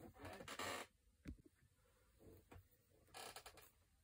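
Faint scratching of a pen drawing on paper in two short bursts, one near the start and one about three seconds in, with a light click between them.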